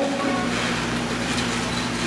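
Steady low hum with an even hiss beneath it, unchanging through a pause in the speech.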